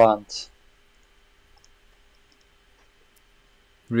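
A few faint, sharp computer mouse clicks over near-silent room tone.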